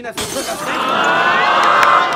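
Studio audience suddenly bursting into loud laughter and shouting. The many voices swell, loudest near the end.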